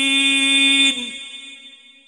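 A male Quran reciter's voice holding the drawn-out final syllable of a verse on one steady note, dipping slightly and ending about a second in. A reverberant echo then fades away.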